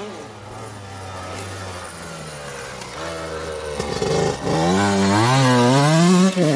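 Motocross dirt bike engines: one running fairly quietly in the distance, then from about four seconds in another bike comes close, its engine revving up and down with the throttle and growing loud.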